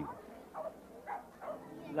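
A dog barking faintly, a few short barks in a row.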